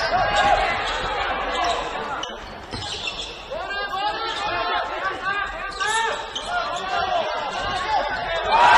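Basketball game play on a hardwood court: the ball bouncing as it is dribbled, with sneakers squeaking in many short chirps through the second half, over shouting voices from players and crowd echoing in a large gym.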